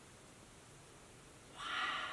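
Near-silent room tone, then about a second and a half in a short, breathy in-breath by an elderly woman just before she speaks.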